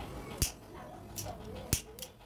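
A small disposable lighter being flicked: two sharp clicks about a second and a quarter apart, with a fainter click between them.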